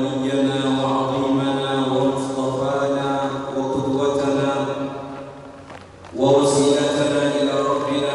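A man's voice chanting Arabic sermon-opening formulas in long, drawn-out melodic lines through a microphone. It trails off about five seconds in, pauses briefly, then starts up again loudly.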